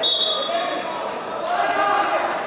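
Voices echoing in a large sports hall around a wrestling bout, with a brief high steady tone in the first half-second.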